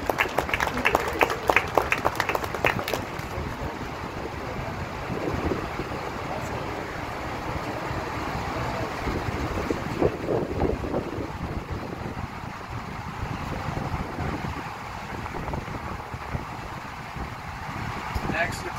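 A small group clapping in a quick, even patter for about three seconds, then the indistinct chatter of an outdoor crowd with wind noise on the microphone.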